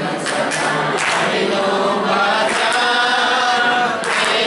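A group of voices, mostly women's, singing together in unison, with hand claps scattered through the singing.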